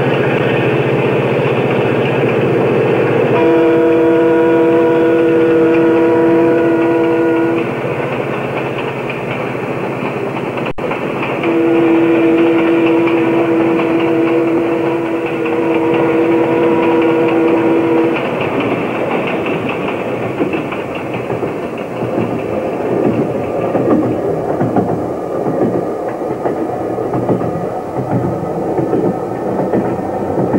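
A train running with a steady rumble, its horn sounding two long chord blasts, the first about three seconds in and the second about halfway through.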